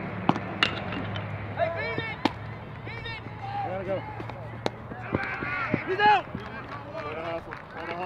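Players and fans shouting and calling out during play at a baseball game, with several sharp knocks of ball on bat or glove. A steady low hum runs underneath and fades out about seven seconds in.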